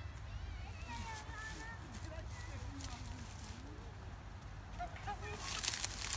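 Faint, distant voices over a steady low rumble, with a short rustle near the end.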